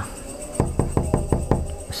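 Knuckles knocking on a wooden panel door: a quick run of about eight knocks in the second half.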